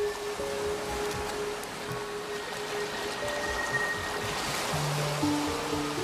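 Shallow ocean waves washing over a sandy shore, a steady hiss of surf, under sustained notes of background music that deepen in the second half.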